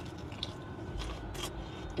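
Someone quietly chewing a mouthful of salad, with a few soft clicks and crunches, over a steady low background rumble.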